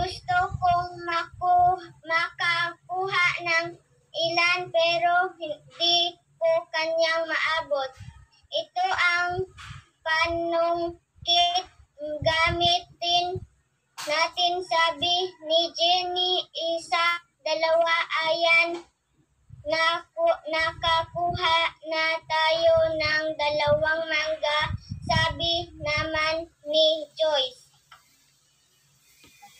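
A child's voice singing in short, fairly level-pitched phrases broken by brief pauses.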